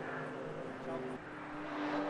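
Porsche 911 race cars' flat-six engines running at speed as the pack approaches, a steady engine note whose pitch steps up about a second in and grows louder towards the end.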